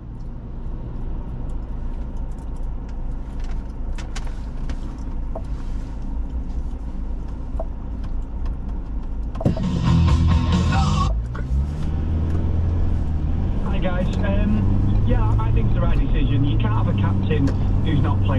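Steady low rumble of the Ford Ranger pickup's engine and road noise heard inside the cab, with a few faint clicks. About halfway through, a short louder burst comes in, and talk follows over the rumble in the last few seconds.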